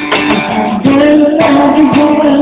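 Live band music: acoustic guitar strummed, with a voice singing held notes over it.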